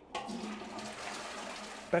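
A toilet flushing as the cistern lever is pressed: a steady rush of water that starts just after the beginning and cuts off suddenly near the end.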